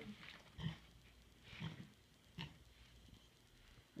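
Pot-bellied pig giving a few faint, short grunts, with a soft click between them.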